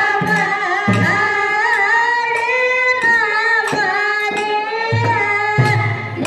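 A woman singing a Kannada dollu pada devotional folk song, her held notes bending in ornaments, with small hand cymbals struck in a steady rhythm and low drum strokes beneath.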